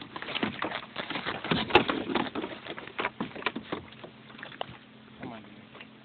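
Handling noises from unhooking a small fish on a kayak: a run of scattered clicks and knocks that thins out and quietens after about four seconds.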